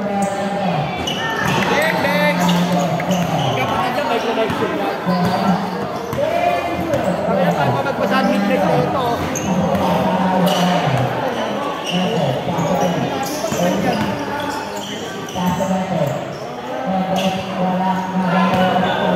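A basketball dribbled and bouncing on a concrete court, over players and onlookers calling out, with a low hum that comes and goes.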